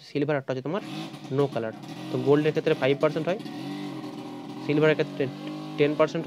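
A man talking, with a steady motor-vehicle engine noise underneath from about a second in until past the middle, then fading.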